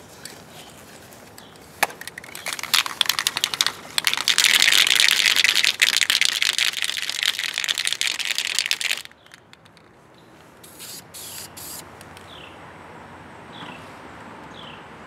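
Aerosol can of Krylon Fusion spray paint spraying. A few short spurts lead into a long steady hiss from about four to nine seconds in, which cuts off suddenly, and a few more brief spurts follow.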